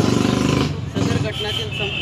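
A motor vehicle engine running close by, a dense low pulsing rumble that stops abruptly under a second in, after which voices carry on over street background.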